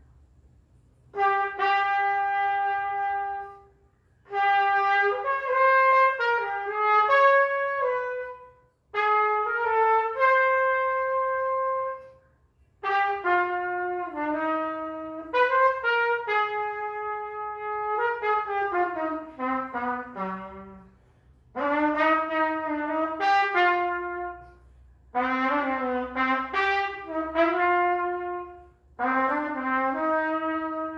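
Solo trumpet playing an unaccompanied jazz melody in phrases a few seconds long, with short breaks between them. About two-thirds of the way through, a long descending run ends on a low note.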